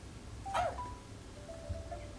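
Children's puppet show soundtrack playing quietly: a brief voice-like sound about half a second in, followed by held single musical notes.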